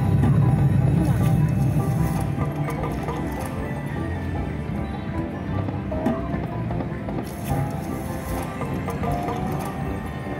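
Huff N Puff slot machine playing its free-games bonus music and reel-spin sound effects, over the chatter of a casino floor.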